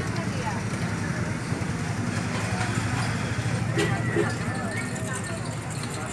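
Outdoor street-market ambience: a steady low engine hum from road traffic under a background babble of voices, with one brief click just before four seconds in.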